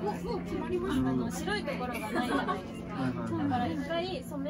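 Several people talking in a lively, overlapping conversation.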